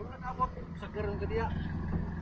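Faint voices of people talking over a steady low engine hum.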